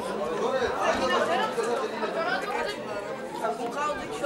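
Several spectators talking at once: overlapping chatter of voices, with no single voice standing out.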